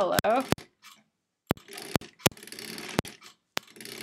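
Sewing machine stitching slowly through a fused appliqué block. It runs for about two seconds from a second and a half in, with a few sharp clicks.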